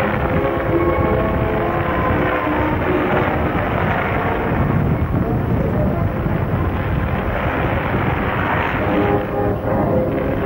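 Wind buffeting the microphone in a steady rumble, with music from a loudspeaker playing underneath, its held notes clearest early on and again near the end.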